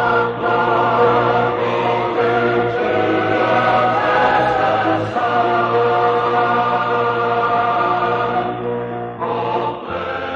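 Choral music: a choir singing long held chords over a low sustained bass note, the chords changing every second or two and thinning out near the end.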